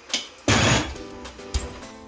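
Oven loaded and closed: a short loud rush of metal noise as the trays and rack go in, then a single sharp knock as the oven door shuts, over background music.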